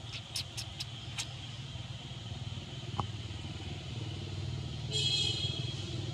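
A steady low rumble, like a vehicle engine running, with a few sharp clicks near the start and a short, loud high-pitched buzzing burst about five seconds in.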